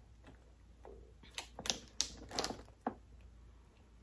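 A cluster of light clicks and knocks, starting about a second in and lasting under two seconds: plastic bottles and a plastic shaker cup being shifted and set into a plastic bin.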